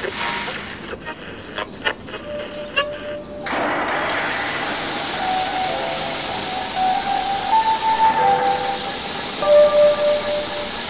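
A few clicks, then about three and a half seconds in a steady radio hiss comes on suddenly. Through the hiss a faint tune of single, stepping notes plays, like a station's call-sign melody heard through an old radio just before the news broadcast.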